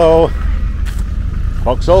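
Low, steady engine rumble of classic cars driving slowly past on a gravel lane, one passing close by.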